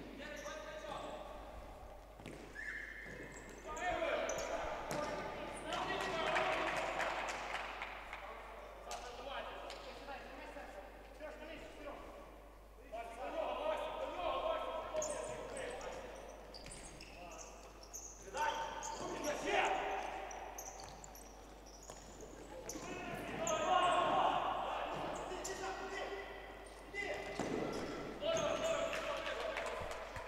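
A futsal ball being kicked and bouncing on a wooden parquet floor, echoing in a large hall, with players calling out to each other on the court.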